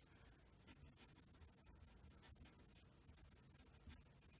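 Faint scratching of a pencil drawing a line on paper, with a few small ticks.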